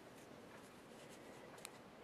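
Near silence: faint rubbing of cotton yarn and a couple of light clicks from metal knitting needles as stitches are worked.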